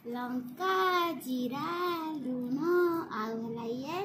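A young child singing a string of short sung phrases, the pitch gliding up and down between them.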